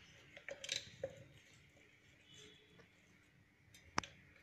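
Faint clicks and scrapes of a spoon against small spice containers and a plastic mixing bowl as powder is spooned over minced chicken, with one sharp click near the end.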